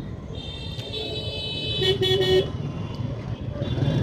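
A vehicle horn sounds, a high steady tone of about two seconds with a louder blast around two seconds in and a faint repeat near the end. Under it runs the steady low rumble of the motorcycle and street traffic.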